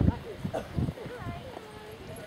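Trotting horse's hooves thudding on grass, a few dull beats in the first second, with faint voices in the background.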